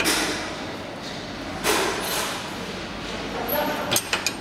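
Scraping and rustling from pliers and gloved hands twisting the replacement heat wire at the L-bar sealer's terminal. Two louder scrapes come, one at the start and one a little under two seconds in, and a sharp click comes near the end.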